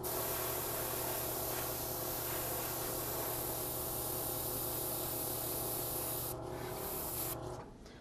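Top-loading airbrush spraying black paint: a steady hiss of air and paint over a low steady hum. The hiss changes about six seconds in and stops just before the end.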